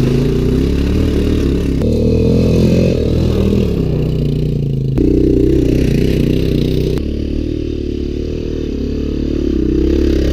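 Quad bike engine running and revving hard over dirt, its pitch rising and falling. The sound changes abruptly about two, five and seven seconds in.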